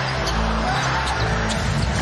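Basketball arena sound during live play: crowd noise under music with a low bass line that steps between held notes. A few short, sharp sounds from the court come through, at about a quarter second, about half a second and about one and a half seconds in.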